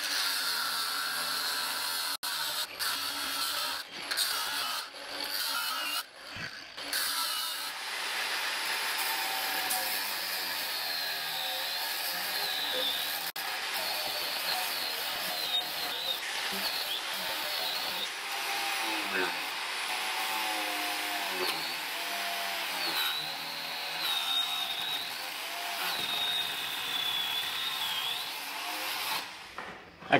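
An angle grinder with a thin cut-off wheel cutting through an old weld in a skid steer's steel loader arm. Its whine wavers and dips as the wheel bites. It stops and starts a few times in the first several seconds, then cuts steadily until it stops near the end.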